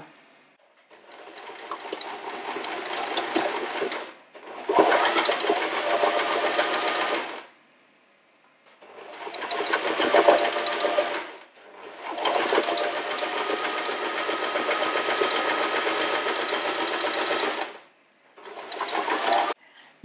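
Janome domestic sewing machine stitching a seam in five runs of a few seconds each, separated by short pauses; the first run builds up speed as it starts.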